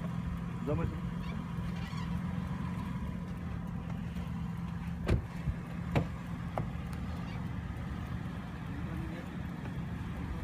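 SUV engine idling steadily, with two or three sharp clicks about five to six and a half seconds in as the driver's door is unlatched and opened.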